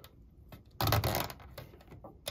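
Handling noise of a thin wire being worked into the twist-lock antenna terminal on the back of a Sansui 3900Z receiver: faint small clicks and a short rustling burst about a second in.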